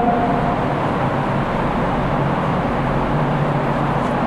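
Steady background noise with a low, even hum under it and no distinct events.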